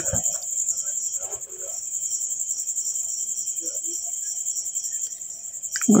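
A steady high-pitched insect trill with a fast, even pulse, under a faint murmur of voices.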